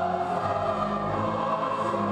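Choral music: voices holding long, sustained chords that shift slowly.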